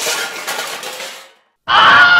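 Noise from the camera being handled fades out. Then, near the end, a hip-hop theme song starts loudly with a sung vocal line.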